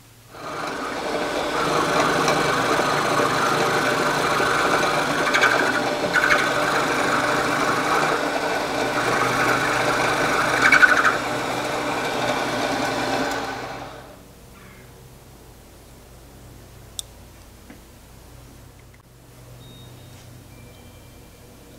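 A milling machine's end mill cutting a block of square bar stock: a steady cutting sound with a ringing whine, swelling briefly a few times. It stops at about 14 seconds, leaving a faint low hum.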